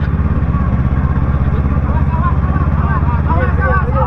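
Motorcycle engine running steadily at low revs, with an even pulse, as the bike is turned around at walking pace. Faint voices of people nearby.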